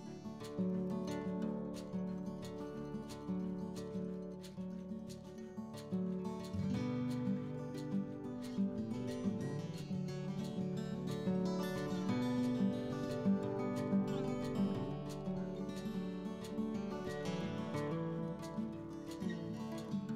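Background music: plucked acoustic guitar playing a steady melody, growing fuller in the low end about six and a half seconds in.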